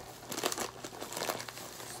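Plastic snack wrappers crinkling as they are handled, a dense run of irregular crackles.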